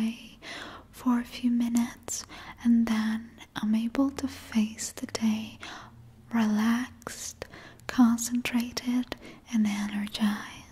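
A woman speaking in a soft, whispery voice, in short phrases broken by breathy pauses.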